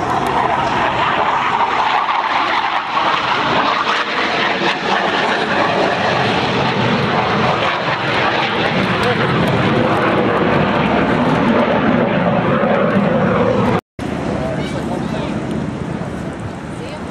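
Loud, steady jet noise from Blue Angels F/A-18 Hornets flying past, its strongest pitch sinking slowly as the jet goes by. The sound cuts out for a moment near the end.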